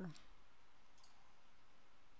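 Two faint computer mouse clicks about a second apart, over quiet room tone.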